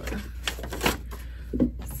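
Clothes hangers clicking and knocking as garments are pushed along a closet rod, with cloth rustling; sharp clicks come about half a second in, just under a second in, and again near the end.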